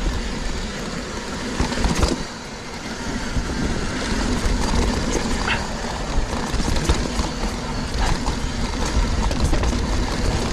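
Mountain bike rolling down a dirt singletrack: wind rumble on the microphone, with tyres on dirt and rattling knocks from the bike over bumps.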